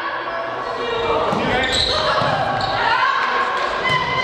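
Volleyball rally in a sports hall: players' calls and shouts, with sharp smacks of the ball being hit, the last a spike near the end, all echoing in the hall.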